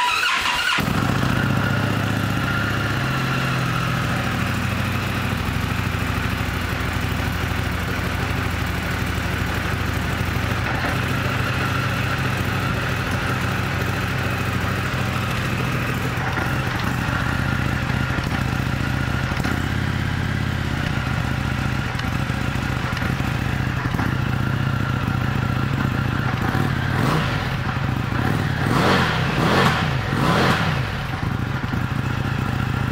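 A 2019 Indian FTR 1200's liquid-cooled V-twin, fitted with an Akrapovic exhaust, starts right at the outset and then idles steadily. Near the end the throttle is blipped a few times and the engine briefly revs up.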